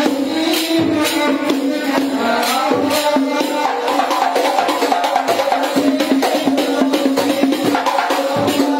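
Hadrah ensemble: hand-struck frame drums (rebana), some with metal jingles, playing a fast, steady interlocking rhythm under a male voice singing devotional verse through a microphone.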